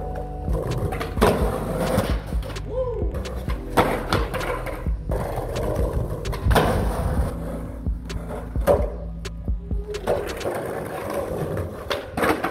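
Skateboards rolling on concrete, with repeated sharp pops, clacks and landings as riders ollie at a painted concrete ledge. Music plays underneath and fades out near the end.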